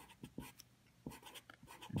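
Felt-tip marker writing on paper: a string of short, faint, scratchy strokes as letters and symbols are drawn.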